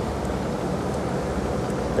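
Boat's motor idling with a steady low rumble.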